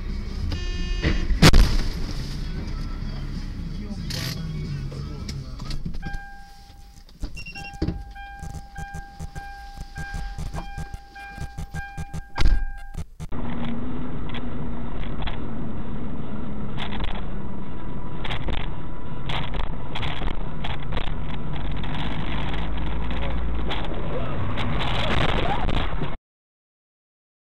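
Dashcam recordings of road crashes: a loud collision bang about one and a half seconds in and another sharp impact about twelve and a half seconds in. From about thirteen seconds in there is the steady engine and road noise of a car moving.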